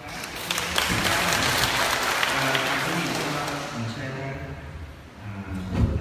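An audience applauding in a large, echoing hall: the clapping starts just after the opening, keeps up for about three seconds and dies away. A single thump near the end.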